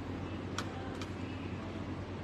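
Steady low background hum with hiss, broken by two brief clicks about half a second apart near the middle.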